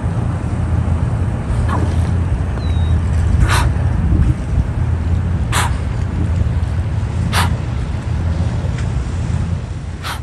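A dolphin surfacing and blowing: three short, sharp breath puffs about two seconds apart, with a fourth at the end. A steady low rumble runs underneath.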